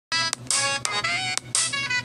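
Intro music jingle: a quick run of bright, ringtone-like notes, each about a third to half a second long, with sharp clicks between them.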